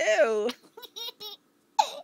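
Toddler laughing: a loud laugh with falling pitch at the start, quick short giggles after it, and another loud burst of laughter near the end.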